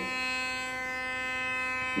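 Philips Sonicare sonic electric toothbrush switched on and held in the air, running with a steady, even buzz.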